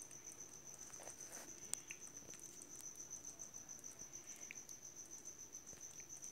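A faint, high, evenly pulsing insect trill, with a few soft clicks in the first two seconds.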